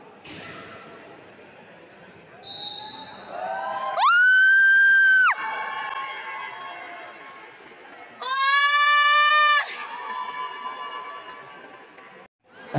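Two loud, steady signal tones, each just over a second long, echoing in a large hall: a higher one about four seconds in and a lower one about eight seconds in, with spectators' voices around them.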